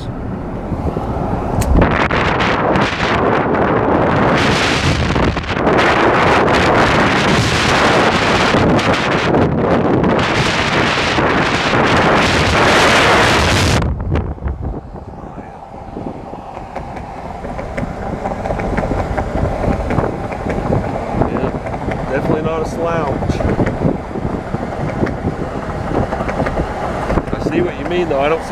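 Wind rushing and buffeting against the microphone at an open vehicle window while driving, loud for about twelve seconds and cutting off suddenly about halfway through. After that, a lower steady hum of road and engine noise inside the cabin.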